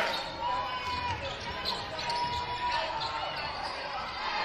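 Basketball gym during play: sneakers squeaking on the hardwood and a ball bouncing, over crowd chatter. Loud crowd cheering dies away at the start.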